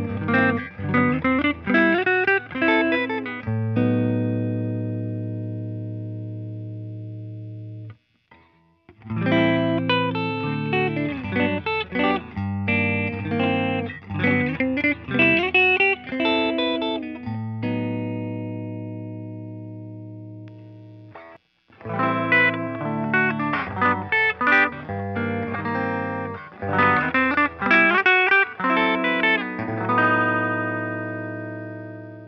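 Collings I-35 LC semi-hollow electric guitar on its neck Lollar Imperial humbucker, played through a Dr. Z MAZ 38 Senior 1x12 combo amp with reverb. Phrases of picked notes and chords each end on a chord left ringing and fading for several seconds. The sound cuts out briefly about eight seconds in and again about twenty-one seconds in.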